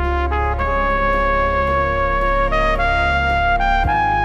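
Flugelhorn playing a melody over a backing track with a deep bass line: one long held note, then a short phrase of notes stepping upward.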